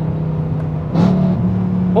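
BMW E92 M3's 4.0-litre V8 running through a cat-deleted, full-titanium straight-pipe exhaust, heard from inside the cabin on the freeway. It is a steady drone that steps up slightly in pitch about a second in.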